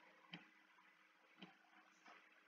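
Near silence: faint room tone with two soft clicks about a second apart.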